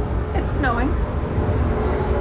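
Race car engines running on the track, their pitch dropping and then climbing again as the cars slow and accelerate, over a steady low rumble.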